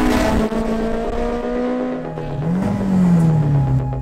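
Honda Integra Type R (DC2) 1.8-litre VTEC four-cylinder engine as the car drives by: the engine note sinks in pitch, climbs briefly about halfway through, then falls away again.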